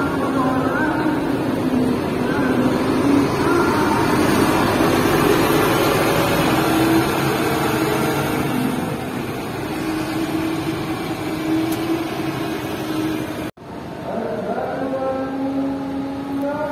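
Intercity coach bus pulling away and driving off, its engine running loudly and building to its loudest a few seconds in, then easing as it moves away. Near the end the sound cuts off abruptly and gives way to a different sound with clear pitched tones.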